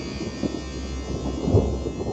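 A low, thunder-like rumble with irregular crackles and thumps, the strongest thump about one and a half seconds in, over a faint high ringing that slowly fades.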